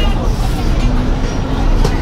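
Busy market ambience: indistinct chatter of people's voices over a steady low rumble, with a short click near the end.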